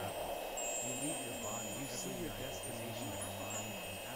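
Ambient background track of a subliminal audio: high, chime-like ringing tones that come and go over a steady low hum and held high tones.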